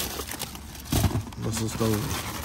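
Plastic-wrapped candy packages and cardboard boxes crinkling and rustling as they are handled, with a voice drawing out an "oh" through the second half.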